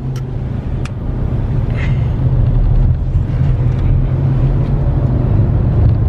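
Car cabin noise while driving: a steady low engine and road rumble that builds over the first couple of seconds as the car picks up speed, with a few faint clicks near the start.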